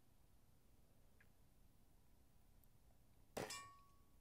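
A single shot from a Diana 54 Airking Pro spring-piston air rifle about three and a half seconds in: one sharp crack followed by a brief metallic ring.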